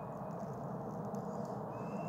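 Steady background room noise: an even low hiss and hum with a faint, thin high-pitched whine, and no distinct event.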